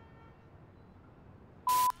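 Quiet room tone with faint steady tones at first, then near the end a short, sharp beep at one steady pitch, with a burst of hiss, lasting about a quarter second.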